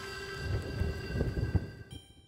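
Soft outro music fading out: sustained notes over a low rumble, with a bell-like ring starting near the end.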